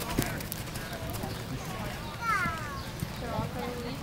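Hoofbeats of a cantering horse on the sandy arena footing, with faint voices in the background.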